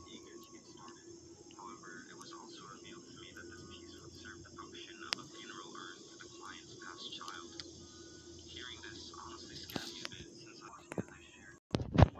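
Faint background of distant voices and chirping over a steady low hum, with a sharp click about five seconds in. Loud knocks from the camera being handled and swung near the end.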